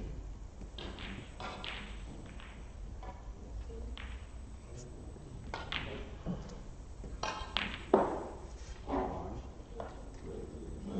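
Snooker balls clicking and knocking against each other and the cushions, with faint voices in the hall. A sharper knock about eight seconds in is the loudest sound.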